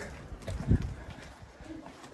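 Footsteps and handling noise of someone walking while carrying a paper gift bag, with one heavier thud under a second in.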